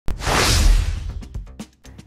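Whoosh sound effect of a news intro sting: a sudden hit opening into a swelling whoosh with a deep low rumble that dies away within about a second, followed by a few quick ticks.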